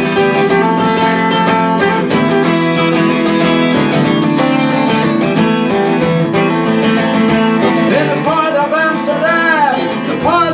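Acoustic guitar strummed in steady chords. From about eight seconds in, a man's voice comes in singing long notes that rise and fall.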